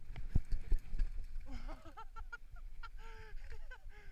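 Mountain bike clattering and thumping over rough, rutted ground in the first second, then a person's voice crying out in short, rising-and-falling wordless yells as a rider ahead goes down on the trail.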